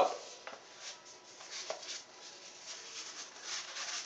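A stack of about fifty sheets of paper rolled into a tube and worked in the hands: faint papery rustling and rubbing with a few soft ticks.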